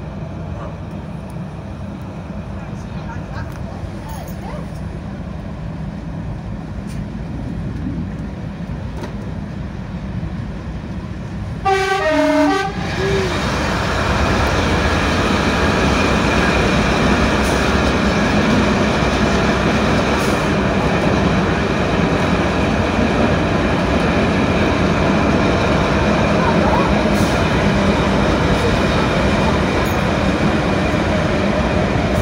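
A Class 108 diesel multiple unit running along the line with steady engine and wheel-on-rail noise, heard from the cab. About twelve seconds in it sounds its two-tone horn briefly, a higher note then a lower one. From then on the running noise is louder and denser as the train runs through a tunnel.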